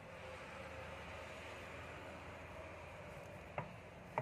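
Faint steady room hiss while small wire leads are twisted together by hand, with one sharp click near the end.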